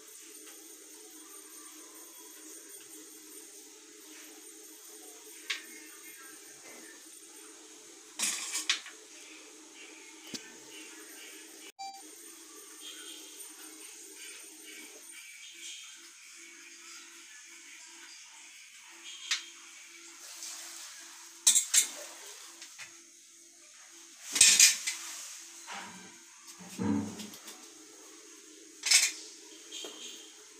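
Knife clinking and scraping against a stainless steel plate while peeled bitter gourds are slit and their seeds scraped out: scattered sharp clinks, the loudest in the second half, over a faint steady hum.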